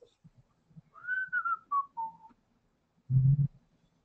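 A person whistling a few short notes that step down in pitch, followed near the end by a brief low hum.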